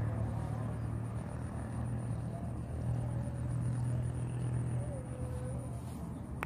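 Outdoor ambience: a steady low hum, like distant engine or traffic noise, with faint distant voices.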